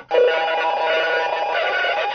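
Improvised music on a keyed string instrument: a sustained, buzzy drone rich in overtones starts just after the beginning and holds steady.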